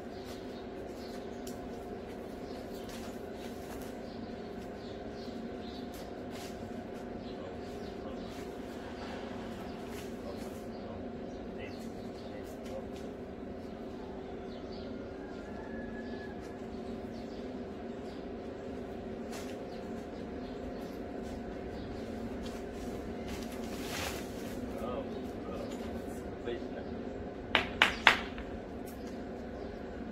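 A steady low hum, with three sharp clicks in quick succession near the end.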